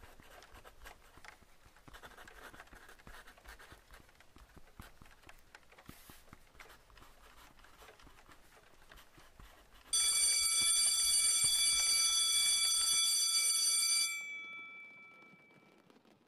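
A school bell rings suddenly about ten seconds in, a loud, steady, high ring that holds for about four seconds and then fades out. Before it there is only faint classroom room tone with light rustles.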